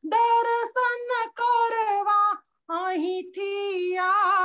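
A woman's single high voice singing a line of a Gujarati Jain devotional bhajan in long, held notes, with a brief pause a little past halfway.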